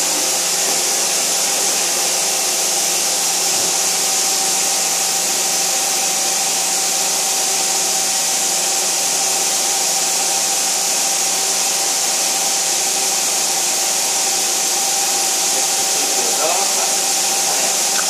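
Vertical machining center running: a steady whirring hiss with a constant mid-pitched whine.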